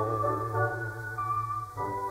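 Hawaiian dance orchestra holding sustained, slightly wavering chords over a steady bass note, with no voice; a new higher note enters about a second in and the chord shifts again near the end.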